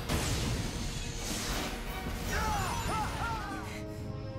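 Cartoon explosion sound effect: a sudden blast, then a long rumbling roar of noise with several short rising-and-falling high-pitched cries over it in the second half, cut off abruptly near the end.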